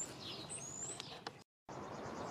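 Faint bird chirps over quiet outdoor background: two thin, high, rising chirps about half a second apart. The sound drops out completely for a moment about one and a half seconds in.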